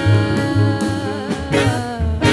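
A live jazz combo playing: two female voices and an alto saxophone over upright bass and drum kit, with held notes and a pulsing bass line.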